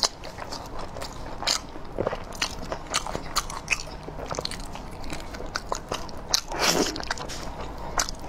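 Close-miked biting and chewing of a braised pig's trotter: wet mouth sounds with many short, sharp clicks of lips and teeth on the skin. There is a longer, noisier stretch of chewing about two-thirds of the way through.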